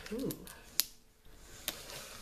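A plastic lotion bottle handled in the hands, with two sharp clicks, the louder one just under a second in and a lighter one near the end.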